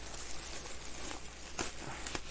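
A clear plastic bag crinkling faintly as it is handled and pulled off a small cardboard box, with one sharp click about one and a half seconds in.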